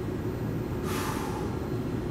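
Small electric cooling fans built into a full-face airsoft helmet, running steadily on medium with a low whirring hum. A short hiss breaks in about a second in.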